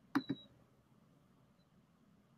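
Two quick clicks with a short, high electronic beep, then near silence.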